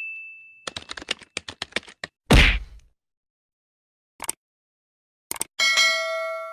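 Subscribe-animation sound effects: a quick run of ticks, a loud whooshing thud, then mouse clicks and a bell ding that rings on near the end.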